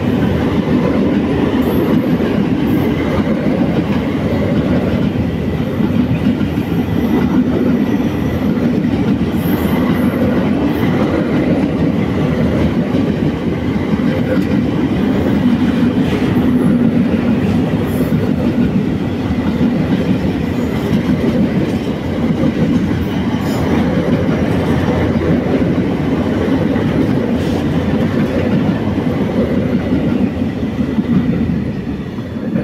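Container wagons of a long intermodal freight train rolling past close by: a loud, steady noise of steel wheels running on the rails.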